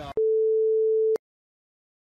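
A single electronic beep: one steady, mid-pitched pure tone lasting about a second, which cuts off abruptly into dead silence.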